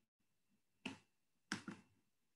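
Three short, sharp clicks: one about a second in and a quick pair near the end.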